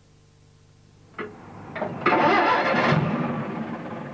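Vehicle engine starting: a click about a second in, then the engine catches and runs loudly for about a second before dying down.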